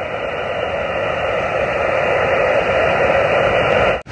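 Xiegu G90 HF transceiver's speaker hissing with band noise on the 12-meter band. It is a steady hiss confined to a narrow voice-width filter and grows slightly louder. No station answers the call.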